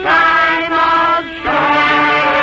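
A group of voices singing together in long, held notes. About a second and a half in, fuller orchestral music takes over.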